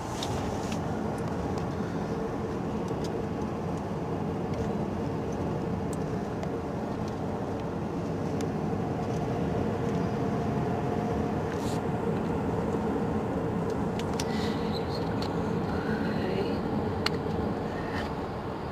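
Steady road and engine noise of a car driving at highway speed, heard from inside the cabin, with a faint steady hum and a few light clicks.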